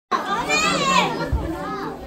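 Children's voices in a crowded room: one child's high-pitched call rising and falling about half a second in, another shorter one near the end, over the chatter of the group.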